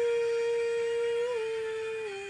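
A girl singing unaccompanied, holding one long note that steps down slightly in pitch twice as it slowly fades.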